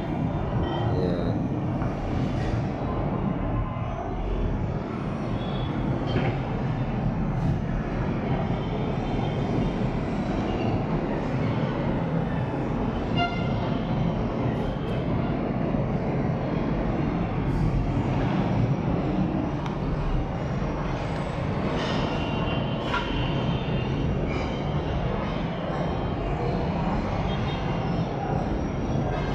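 Steady low rumble of distant city traffic, with a few faint short sounds on top.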